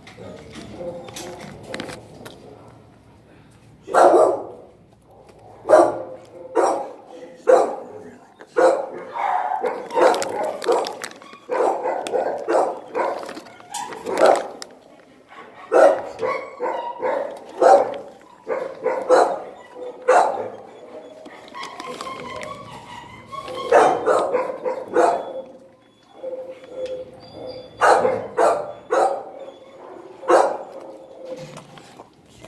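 Dogs barking repeatedly in a kennel block, in irregular runs of loud barks that begin about four seconds in and continue, with brief lulls.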